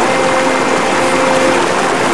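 Shallow river water rushing over rocks close to the microphone: a steady, loud rush.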